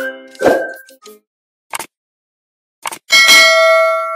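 Sound effects of an animated subscribe button. A short intro jingle ends with a thud about half a second in, then come a couple of short clicks. About three seconds in, a bright bell ding rings on.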